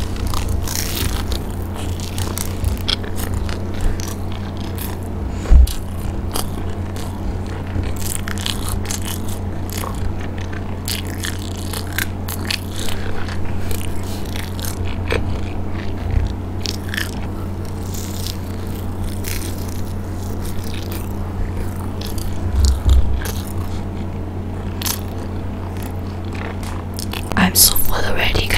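Close-miked chewing and biting of a cheesy corn dog in crunchy batter, with many short crackles and wet mouth clicks throughout, over a steady low hum. Two low thumps stand out, about five seconds in and a few seconds before the end.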